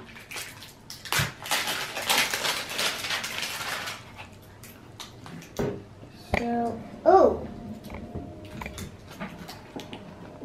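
Stiff plastic shrink wrap crinkling and tearing as it is pulled off a cylindrical toy container: a dense crackle for the first four seconds, then a few lighter clicks of handling.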